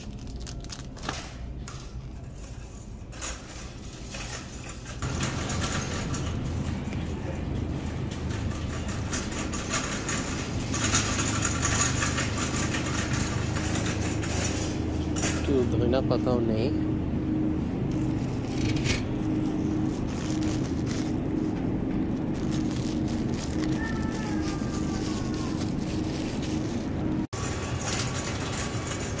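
Wire shopping cart rolling and rattling across a hard store floor, louder from about five seconds in, over a background of voices in a grocery store.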